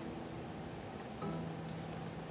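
Acoustic guitar natural harmonics: a string lightly touched halfway along its length rings an octave above the open note as a nearly pure tone and fades. About a second in, another soft harmonic note is plucked and rings on.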